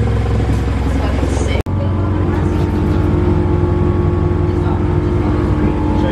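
Car engine idling: a steady low drone that breaks off suddenly about one and a half seconds in, then carries on as a steady hum with a higher note held over it.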